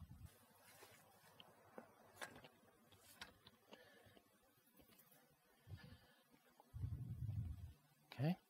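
Near silence: faint outdoor ambience with a few soft clicks and a brief low rumble near the end.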